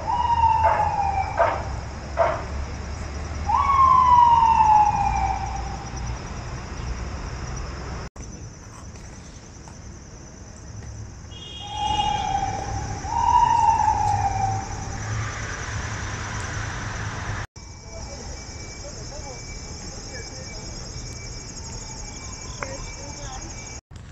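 Emergency-vehicle siren sounding in long slides that fall in pitch, three times over the first half, above a steady high-pitched buzz. The sound drops out abruptly twice where the footage is spliced.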